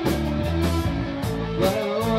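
A live rock band playing: electric guitar, bass guitar and drum kit, with regular drum and cymbal hits under held chords and a note sliding upward near the end.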